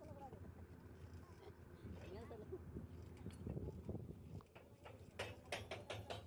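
Faint, distant men's voices calling out over a low steady hum, with a few sharp clicks near the end.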